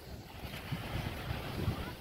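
Wind buffeting the microphone outdoors, heard as uneven low rumbles.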